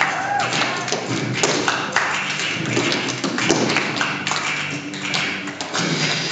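Tap shoes striking a wooden stage floor in quick, irregular rhythmic steps, over a recorded song with vocals.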